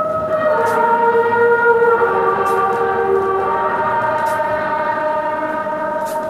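Music played from a vinyl record: layered, sustained held notes without a beat, moving to new pitches about half a second and two seconds in.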